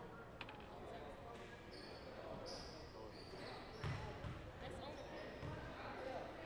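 Basketball bouncing on a hardwood gym floor, with heavy thumps about four and five and a half seconds in, and short high sneaker squeaks on the court. A steady din of distant voices echoes in the gym.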